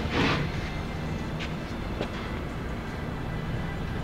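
A loose wooden board slid and shifted across a plank, with a couple of faint knocks, over a steady low rumble.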